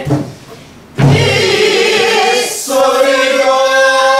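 Group of men singing a Namdo folk song together in long, held, wavering notes, with buk barrel drums. The singing breaks off briefly at the start. About a second in a low drum stroke comes in as the singing starts again.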